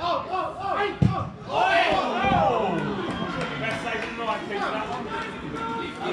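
Footballers shouting and calling to one another on the pitch, with two short thuds about one and two seconds in.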